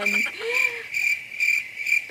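Cricket chirping, a high even run of rapid chirps about four a second, loud and clean: the stock 'crickets' sound effect that marks an awkward silence after a joke.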